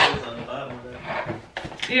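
Graco Fast Action stroller frame being worked by hand, with plastic-and-metal clicks: a sharp click at the start and another shortly before the end, with lighter clatter between.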